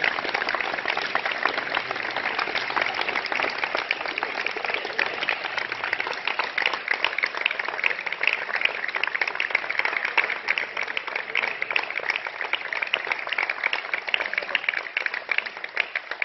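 A small group of people clapping steadily for about sixteen seconds.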